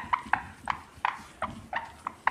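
Whiteboard being wiped clean, squeaking with each back-and-forth stroke, about three short squeaks a second.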